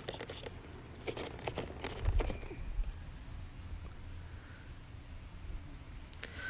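Kitchen knife chopping soft roasted red peppers, the blade tapping lightly and irregularly on a plastic cutting board, mostly in the first couple of seconds, over a low rumble.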